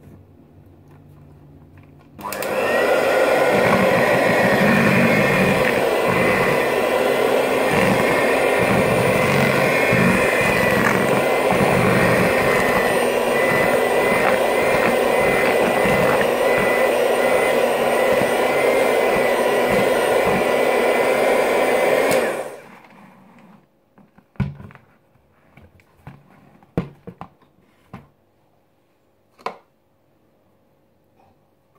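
Electric hand mixer running at a steady speed for about twenty seconds, its beaters churning brownie batter with eggs just added in a plastic bowl, then switched off abruptly. A few light knocks and clicks follow.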